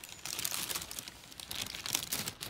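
Paper lunch bag crinkling and rustling as it is handled: a dense, continuous run of crackles.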